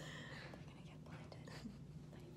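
Quiet, breathy giggling from two women, over a steady low hum.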